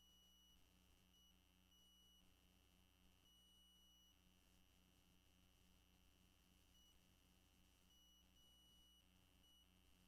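Near silence: only a faint electrical hum and a thin, high, steady whine that wavers on and off.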